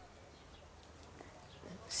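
Near silence: faint background hiss in a pause between a woman's spoken sentences, with her voice returning right at the end.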